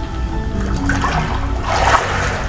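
Water splashing and sloshing in a galvanized stock tank as a man is dunked under for baptism, with the surge of water loudest near the end. Background music plays throughout.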